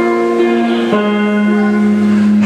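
Live rock band playing an instrumental passage, guitars and keyboard holding chords that change about a second in, with no singing.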